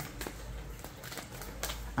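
Tarot cards being shuffled by hand: a few soft, scattered clicks and taps as the cards slide against each other.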